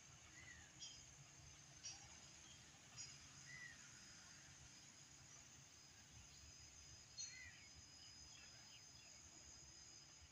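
Near silence: faint outdoor ambience with a steady high hiss and a few short, faint bird chirps.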